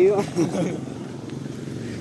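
A brief spoken exclamation at the start, then the low steady hum of a vehicle engine on the street.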